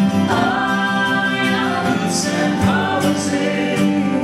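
Live folk-rock song: a male lead voice with a female harmony voice sings two long held notes over a strummed steel-string acoustic guitar.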